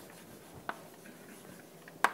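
Chalk writing on a blackboard: faint scratching with a sharp tap about two-thirds of a second in.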